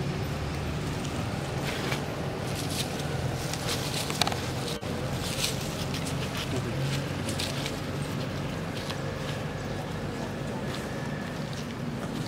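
A steady low engine hum with scattered light rustles and clicks, like movement in dry leaf litter.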